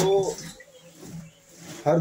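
A man's voice speaking Hindi: a drawn-out word trailing off at the start, a short quiet pause, then speech starting again near the end.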